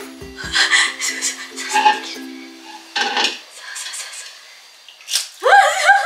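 An egg tapped and cracked into a glass bowl, a few light knocks and clinks, over background music that stops about halfway. A high voice exclaims near the end.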